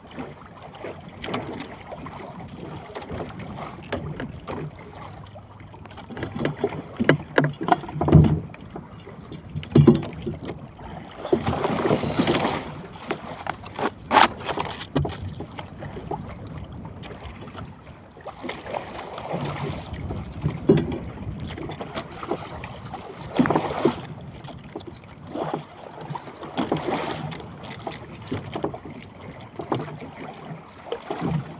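Choppy sea water sloshing and slapping against the hull of a small outrigger boat, in irregular surges, with wind on the microphone and a few sharp knocks from the boat.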